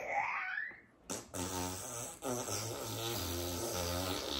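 Long, drawn-out fart noise: a low buzzing rasp that breaks into several stretches over about three seconds. It follows a short sliding squeal at the start.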